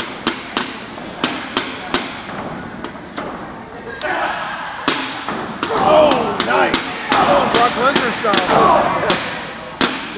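A run of sharp smacks and thuds from blows landing in a wrestling ring, several coming in quick succession. From about halfway through, spectators shout over them.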